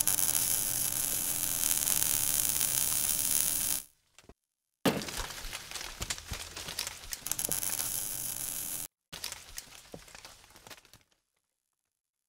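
Sound effects for an animated logo sting, in three bursts of noise. The first is steady and lasts about four seconds. The second begins with a sharp hit about five seconds in. A fainter third fades out about eleven seconds in, and the bursts are split by brief silences.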